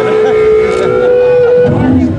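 Electric guitar amplifier feedback: a steady, whistle-like whine held at one pitch, which wavers and cuts off near the end.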